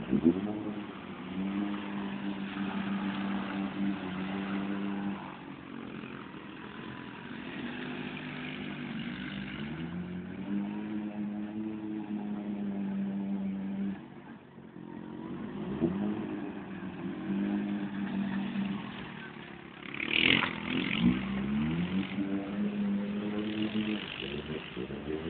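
Polaris RZR side-by-side's engine revving hard in repeated bursts, held high for several seconds at a time with dips and rising surges between, as the machine churns while stuck in deep mud.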